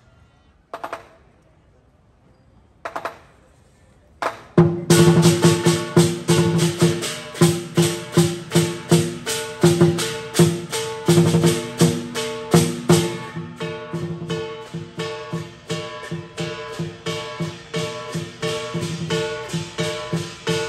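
Lion dance percussion band of drum, cymbals and gong. Two single ringing clashes come in the first three seconds. From about four seconds in, the full band plays a loud, steady, driving beat with the metal ringing on underneath.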